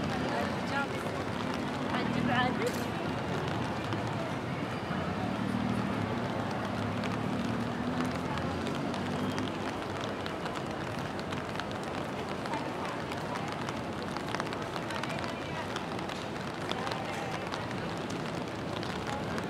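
Rainy city street ambience: a steady hiss of rain with indistinct voices of passers-by, clearest in the first half, and scattered small ticks.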